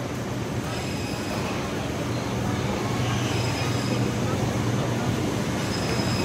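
Steady mechanical hum and noise of a supermarket floor, typical of refrigerated display cases and ventilation running close by.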